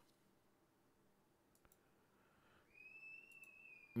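Near silence, with a few faint clicks and, over the last second or so, a faint steady high-pitched tone.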